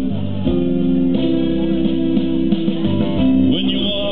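Instrumental passage of a recorded backing track, with guitar prominent and sustained notes that change every second or so, playing between the sung lines.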